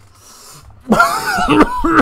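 A man draws in air through pursed lips, as if taking a drag, then about a second in breaks into a fit of rough coughing, a few coughs in quick succession.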